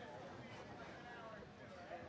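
Faint voices talking, too low for the speech recogniser to pick up words.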